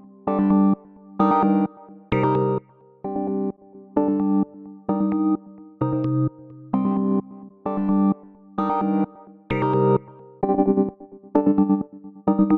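Synth lead melody of short chord stabs, about one a second, looping through the Waves Brauer Motion auto-panner plugin as its presets are switched. Near the end the notes pulse rapidly in level.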